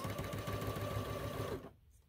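Sewing machine running at steady speed with a faint whine as it stitches a seam on a pieced quilt block, then stopping abruptly about one and a half seconds in.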